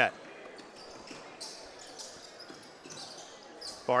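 A basketball being dribbled on a hardwood gym floor, heard as a few faint, irregular bounces over low gym ambience.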